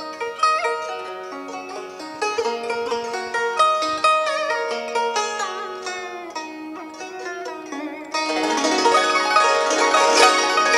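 Vietnamese đàn tranh zither played solo: a melody of plucked notes, some bent in pitch by pressing the string down. About eight seconds in the playing becomes louder and fuller.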